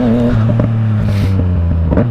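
Remapped Yamaha MT-09's three-cylinder engine running steadily under way, its pitch easing slightly lower near the end.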